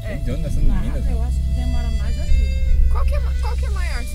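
People talking inside a slowly moving car, over the steady low rumble of the engine and tyres heard from the cabin.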